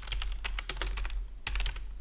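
Typing on a computer keyboard: a quick, uneven run of keystroke clicks as a short line of code is typed.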